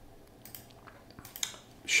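A few faint, sharp clicks from a computer mouse's buttons, spread through the pause over quiet room tone.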